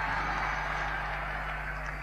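Steady hiss-like noise of an old live concert recording after the band has stopped playing, over a low steady electrical hum.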